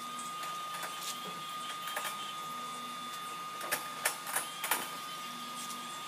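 A steady high-pitched whine with scattered sharp clicks and taps, the loudest a quick run of four about four seconds in.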